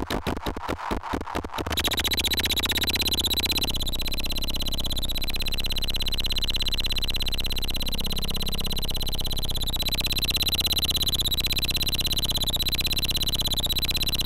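Homemade electronic noise instrument played live. A fast pulsing stutter gives way, about two seconds in, to a loud, dense wall of noise with a steady high whistle and repeating falling chirps.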